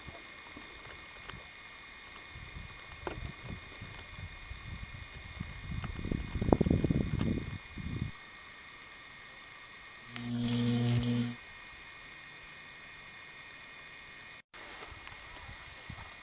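Wind rumbling on the microphone, swelling a few seconds in and dying away about eight seconds in. Then a low, steady hum sounds for just over a second.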